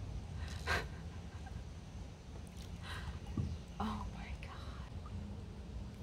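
Hushed whispering: a few short, breathy whispers without voiced pitch, over a low steady rumble.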